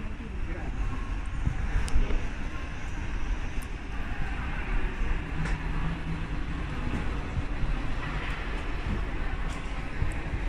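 Steady hubbub of a busy railway station concourse: a low rumble with indistinct voices in the background and a couple of brief clicks.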